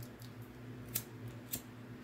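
Two sharp clicks about half a second apart, over a low steady hum.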